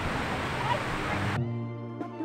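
Hiss of a large fountain's spray with voices and background music, cut off sharply about one and a half seconds in, after which only the background music is left.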